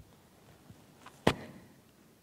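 A single sharp knock about a second and a quarter in, preceded by a couple of faint clicks.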